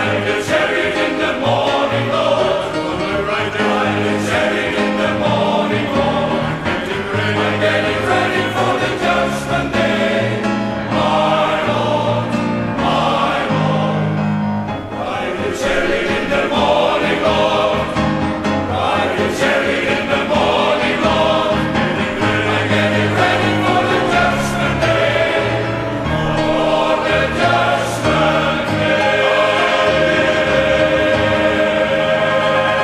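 Men's choir singing a spiritual in full harmony, loud and continuous.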